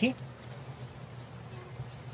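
Steady, high-pitched buzz of insects in the background.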